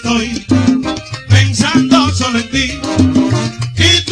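Salsa band playing, with a male lead singer over a steadily pulsing bass line.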